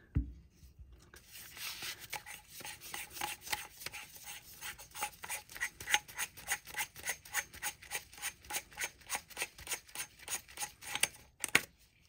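Metal threads rasping as the Edgun Leshiy 2 regulator and plenum are twisted off the buttstock by hand. The sound is a long run of short, even rasping strokes, about five a second, starting about a second and a half in and stopping near the end.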